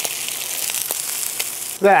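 Birria tacos and a consomme-dipped tortilla sizzling in hot fat on a flat-top griddle: a steady high hiss with a few faint ticks.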